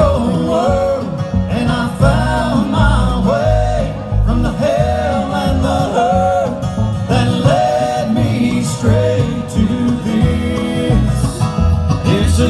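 Live bluegrass band playing amplified through a PA, filmed from the audience: banjo, acoustic guitar and upright bass under a lead melody line, an instrumental passage between sung verses.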